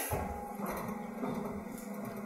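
Quiet room tone of a lecture hall, with a faint steady low hum and no distinct sound events.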